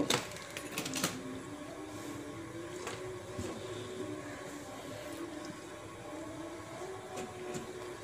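Quiet bench background with a faint steady hum, and two light clicks about a second apart at the start, from test leads and equipment being handled.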